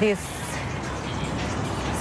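Steady background rumble of road traffic, heard in a pause after a single spoken word.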